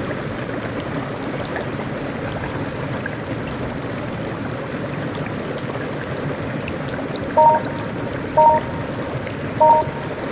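Steady rushing noise of heavy rain. About seven seconds in, short two-note beeps start at roughly one a second, three in all, each louder than the rain.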